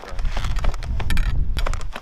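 Wind buffeting the microphone in a snowstorm, a heavy low rumble, with scattered clicks and rustles of handling or clothing.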